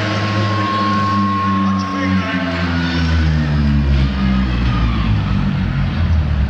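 Live concert music: a sustained band chord with a steady high note, then a deep voice or low instrument slides steadily down in pitch over about three seconds, ending very low.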